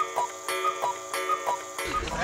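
Clock ticking sound effect, an alternating tick and tock with a pair about every two-thirds of a second, over a held musical chord.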